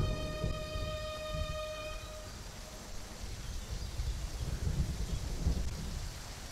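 Movie soundtrack: a single held musical note that stops about two seconds in, over a continuous low rumble and steady hiss of rain-and-thunder ambience.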